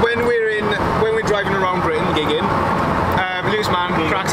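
A man's voice talking inside the cabin of a moving van, over steady road and engine noise.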